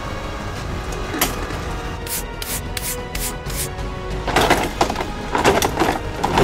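Background music, with a run of about six evenly spaced sharp clicks in the middle and louder bursts of noise near the end.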